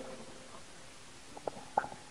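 Faint handling noise from a corded handheld microphone as it is moved, with two short knocks a little past the middle.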